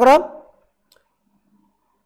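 A man's voice trailing off at the end of a word, then near silence with a couple of faint clicks.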